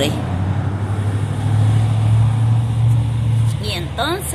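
A road vehicle going by, its low engine hum swelling about a second in and fading near the end, over a steady rush of traffic noise.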